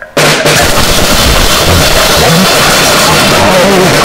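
Noisecore recording: after a split-second gap between tracks, a new track bursts in abruptly with a loud, dense wall of harsh distorted noise and pounding drums.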